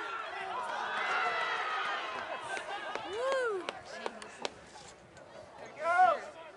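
Distant shouting and calling from players and spectators at a soccer match, with several voices at once early on, one drawn-out rising-and-falling call about three seconds in, and two short sharp knocks a little later.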